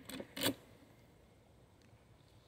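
Two brief scraping clicks, the second louder, as the wooden hive's top cover is worked loose by gloved hands.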